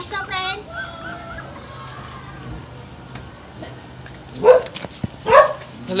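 An adult dog, the puppies' mother, barking loudly twice, about four and a half seconds in and again just after five seconds: a defensive warning at people handling her puppies.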